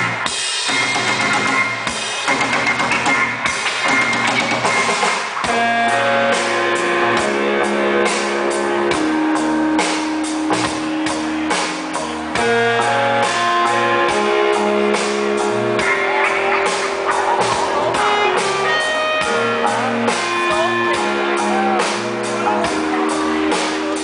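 A live band playing: a drum kit keeping a steady beat with guitar, and held instrument notes coming forward about six seconds in.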